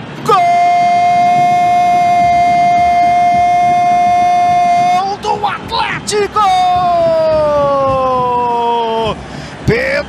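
A football commentator's drawn-out goal shout, held on one steady pitch for about five seconds. After a few short words, a second long shout slides slowly down in pitch for nearly three seconds.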